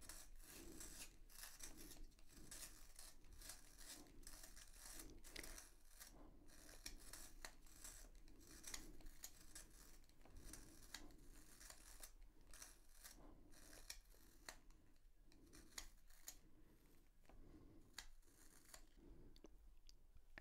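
Small handheld plastic pencil sharpener shaving a wooden 2B pencil: a faint run of repeated rasping, grinding strokes with small clicks as the pencil is turned in the blade, giving a very sharp point.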